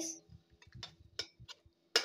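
A spatula scraping and clicking lightly against a steel kadai while thick tomato masala is stirred: a few separate soft clicks, about five in two seconds.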